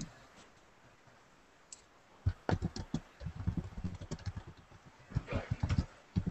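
Typing on a computer keyboard heard over a video call: irregular key clicks that start about two seconds in and carry on to the end.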